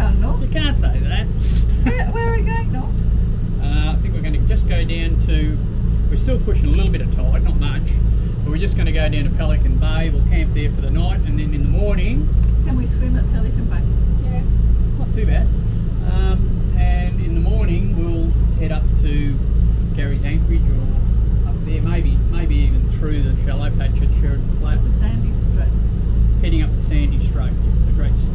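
Steady low drone of the catamaran's engine running under way, with people talking over it.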